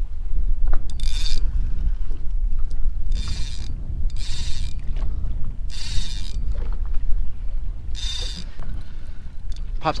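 A fishing reel whirring in five short bursts of under a second each, with a big fish on the line and the rod bent hard. Under it is a steady low rumble of wind on the microphone.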